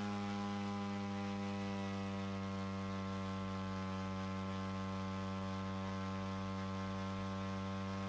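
A steady hum that holds one unchanging pitch, with many overtones over a light hiss.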